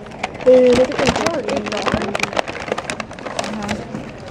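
A short hummed 'mm' about half a second in, over a busy background of voices with frequent sharp clicks and clatter.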